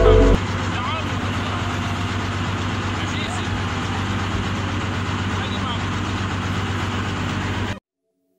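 A man's voice recorded outdoors on a phone, half-buried under loud, steady rough background noise; the sound cuts off abruptly near the end. A music bed stops just after the start.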